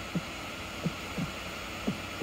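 A quiet background beat of low thumps that fall in pitch, in close pairs about once a second, like a heartbeat.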